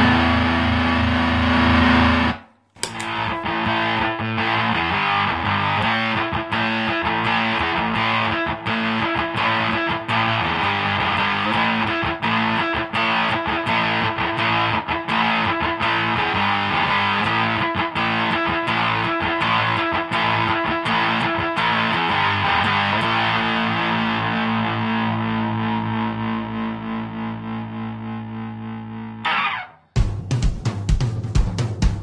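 Electric guitar through a ZVEX Fuzz Factory fuzz pedal, sustaining one thick fuzzed note that cuts off suddenly after about two and a half seconds. Then a fast, busy distorted electric guitar riff plays and fades out near the end.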